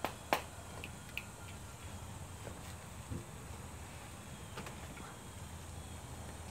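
Quiet background: a low steady hum with a few light clicks and taps in the first second or so.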